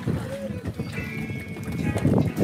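People's voices with music, and a high held tone about a second in.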